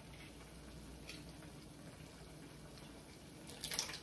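Canned cherry tomatoes and their juice pouring from the can into a pan, a short splashing burst near the end over a faint steady hiss.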